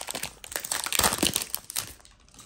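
Foil wrapper of a Pokémon trading card booster pack crinkling and tearing as it is opened and the cards are pulled out: a dense run of crackles that thins out near the end.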